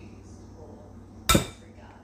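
A single sharp knock against a glass mixing bowl about a second in, with a brief ring after it.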